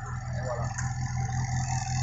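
Autobianchi A112 Abarth's four-cylinder engine idling steadily, a low even hum.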